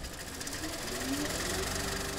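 A machine running steadily, a continuous mechanical hum and rattle.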